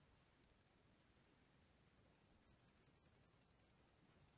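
Near silence: room tone with faint runs of rapid, high-pitched ticking.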